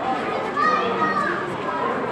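Overlapping chatter of children's and adults' voices in a busy indoor hall, with a couple of high-pitched children's voices rising above the rest about half a second to a second and a half in.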